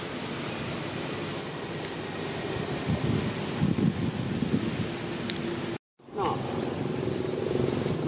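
Steady outdoor background noise with low rumbling that grows louder and more uneven in the second half, cut off by a sudden brief silence about six seconds in.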